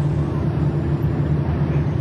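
A steady, unchanging low mechanical drone, like heavy machinery or an engine running.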